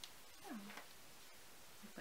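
A single short, quiet vocal murmur with a falling pitch, such as a woman's 'hm', about half a second in; otherwise near silence.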